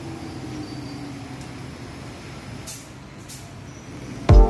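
Steady low background noise with two short hissing bursts a little under three seconds in and again about half a second later.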